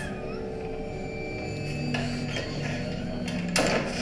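Horror film background music: several held, overlapping notes sustained through the scene, with a short noisy rush about three and a half seconds in.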